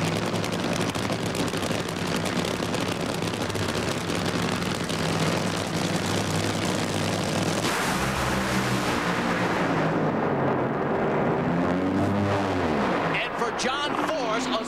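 Two supercharged nitromethane Funny Car V8 engines crackling at idle as they stage, then launching at full throttle about eight seconds in. The sound drops away and falls in pitch as the cars run down the track, and the engines cut off near the end.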